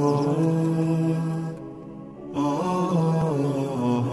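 Intro theme music: a wordless vocal chant holding long notes with slow pitch bends. It fades down briefly a little before the middle and swells back in.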